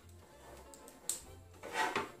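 Soft background music, with a sharp click about a second in and a brief louder noise near the end from hands working at the sewing machine's needle and bobbin area.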